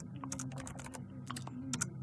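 Typing on a computer keyboard: about eight separate keystrokes at an uneven pace.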